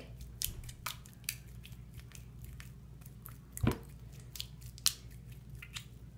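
Sticky, runny homemade shampoo slime clinging to a hand, making scattered small wet clicks as the fingers spread and close, with a louder knock about three and a half seconds in.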